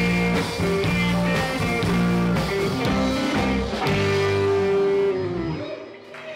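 Live rock band playing an instrumental passage on two electric guitars, electric bass and drums. About five seconds in, a long held note slides down in pitch and the music drops away.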